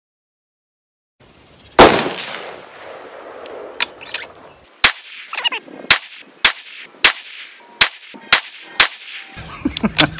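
A single .308 bolt-action rifle shot, very loud with a long echoing tail, followed by a quick run of smaller sharp clicks and knocks about half a second apart.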